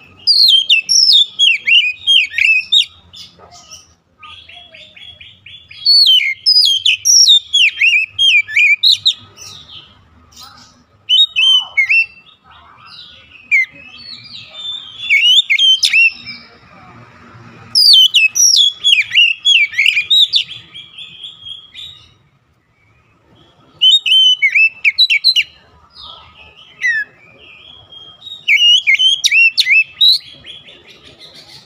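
Oriental magpie-robin (kacer) singing loudly in bursts of two to three seconds, each a rapid run of varied whistles and chirps, with short pauses between bursts.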